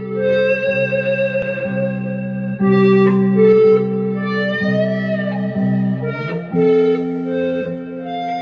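Electric guitar playing a sustained, singing lead melody with a long bend about halfway through, over held electric bass notes from a live band.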